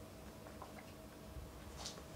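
Quiet room tone with a faint steady hum, and a short breath near the end.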